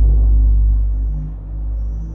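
Background music carried by a deep, sustained bass, with low notes that shift in pitch.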